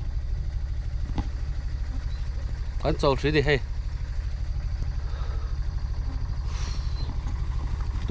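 A steady low engine rumble with a fast, even pulse, like an engine idling, with a brief voice about three seconds in.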